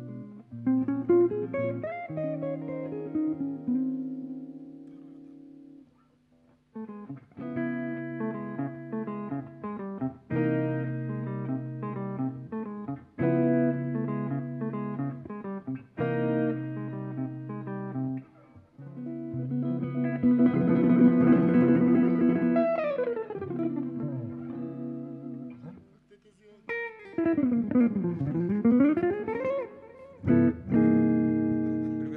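An electric guitar and an archtop acoustic guitar playing together, in chords and single-note lines, with a brief break about six seconds in. Near the end, notes slide down in pitch and back up again.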